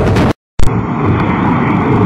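Music cuts off abruptly into a moment of dead silence. Then a click starts a loud, steady background noise with a low hum, the noise floor of an old recording before the speech begins.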